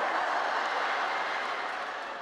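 Audience applauding, the clapping fading away near the end.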